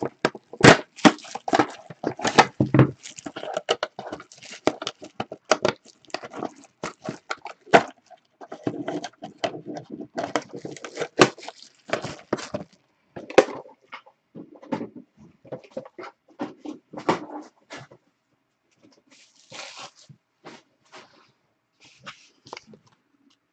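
Plastic wrapping crinkling and tearing as a trading-card box is unwrapped by hand: a rapid run of crackles and rustles that thins out to a few faint ones over the last few seconds.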